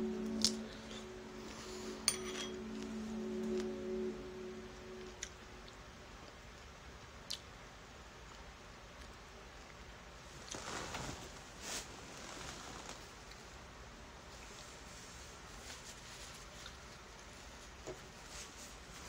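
A few light, sharp clinks of a metal fork against a dish, spread out between quiet stretches. Faint music plays under the first five seconds or so.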